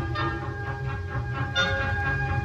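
Junior high school wind band playing a sustained passage of sounding chords, with a louder chord entering near the end. It is a dull, worn recording transferred from an old tape.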